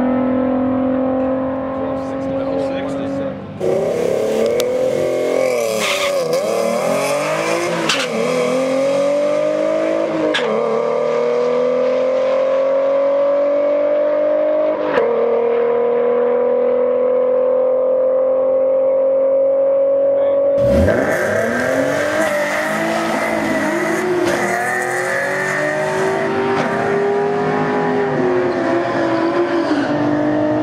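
Ford Mustang 3.7 L V6 running wide open down a drag strip on a quarter-mile pass, its pitch climbing in long pulls broken by several sudden drops at the gear shifts. About two-thirds of the way through, another Mustang's run cuts in, pulling hard again.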